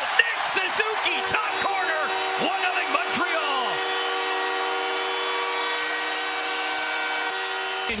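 Arena crowd cheering a goal, with shouts in the first seconds. From about a second in, the arena's goal horn sounds one long, steady blast of several notes at once, lasting until near the end.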